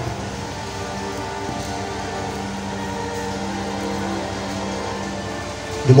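Soft background music of sustained chords: held tones that change slowly, playing steadily under a pause in the preaching.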